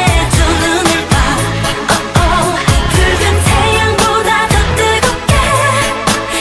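Pop song with singing over a steady, bass-heavy beat, the backing track for a dance routine.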